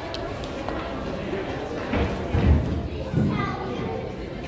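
Background chatter of visitors and children's voices in a large, echoing indoor hall, with faint music, and a low thump about halfway through.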